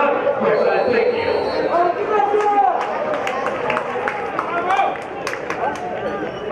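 Men's voices calling out and talking at a football pitch, with several sharp knocks around the middle.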